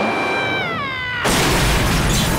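Cartoon sound effects: a high whistle that holds and then slides down in pitch over a hissing rocket as the rocket sneakers fall from the sky, then a sudden loud crash about a second and a quarter in that keeps on rumbling.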